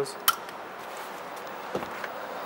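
A single sharp metallic clink about a quarter second in, as a small steel bolt is dropped or knocks against a steel parts bowl. A faint knock follows near the end over a low steady hiss.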